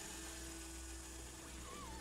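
Quiet film-score drone: long held low notes over a deep steady hum, with a faint wavering high glide near the end.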